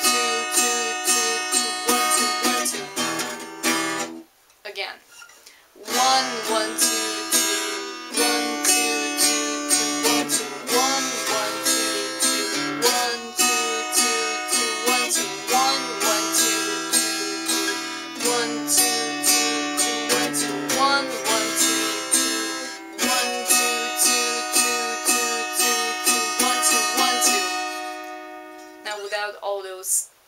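Stagg cutaway acoustic guitar strummed in a steady rhythmic chord pattern. About four seconds in the playing stops for nearly two seconds, then resumes and fades out near the end.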